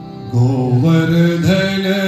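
Devotional mantra chanting begins about half a second in, sung loudly in stepping pitches over a steady held drone.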